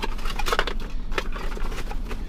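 Hands rummaging through a cardboard product box and its paper inserts: a few sharp rustles and clicks, about a second or less apart, over a steady low hum.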